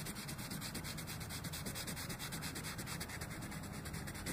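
Colored pencil shading on paper, the lead scratching in quick, even back-and-forth strokes while laying in a blue shadow.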